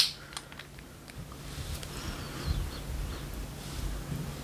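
Quiet handling of a small glass essential-oil bottle: a few faint light clicks as its cap is worked open, then faint low rumbles of handling over a steady low hum.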